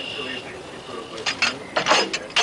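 Metal clanks and clicks of an old naval gun's breech mechanism being worked by hand. A thin high steady tone sounds in the first half-second, then a few sharp clanks follow in the second half, the loudest just before the end.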